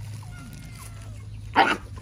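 A dog gives one short, sharp bark about one and a half seconds in, over a faint steady low hum.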